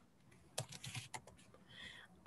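Faint clicking of computer keyboard keys, a short burst of typing about half a second in, as 'Yes' is entered into a spreadsheet cell.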